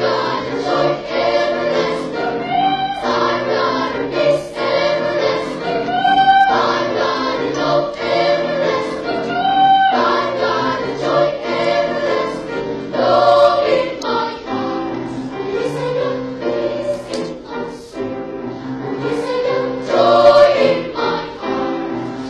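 Children's choir singing under a conductor, many voices together, swelling loudest near the end.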